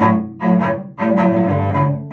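Cello playing a rhythmic accompaniment (comping) figure, like a guitar player's chordal backing. It plays short notes with two or more strings sounding together, struck about every half second, then holds the sound for longer in the second half.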